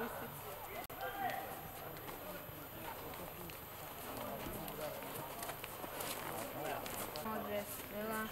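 Indistinct voices of people talking, with the soft hoofbeats of a horse walking on sand.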